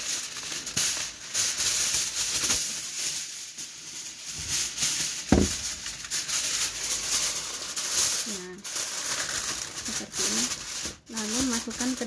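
Aluminium foil crinkling and rustling as it is pulled off the roll, torn and pressed around a glass baking dish. One thump about five seconds in.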